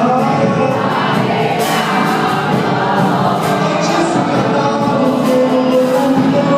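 Live gospel worship song: a worship leader and a congregation singing together over a church band.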